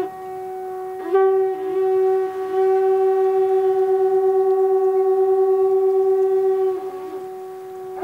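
Conch shell trumpet blown by a Buddhist monk. A new blast starts about a second in with short slides in pitch, then settles into a long, steady held note with a slight regular waver, which fades away near the end.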